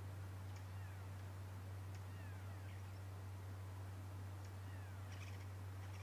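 Faint bird calls, each a short descending whistle, heard three or four times, with a few faint clicks near the end, over a steady low hum.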